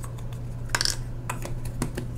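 Light plastic clicks and taps as the snap-on lid of a 35mm film canister is pried off and the film cassette is taken out, with one sharper click about midway.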